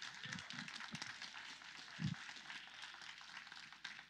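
Faint room noise with scattered soft low sounds and one brief low thump about two seconds in.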